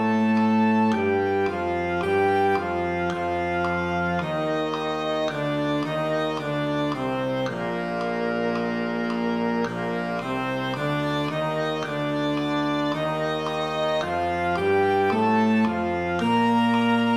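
Synthesized concert-band playback of a beginner band exercise: woodwinds and brass playing the same simple melody together in octaves at a steady moderate tempo. The notes are mostly even quarter and half notes, with a longer held chord midway. The timbre is smooth and organ-like.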